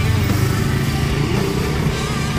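A small motor scooter's engine running as it rides past close by.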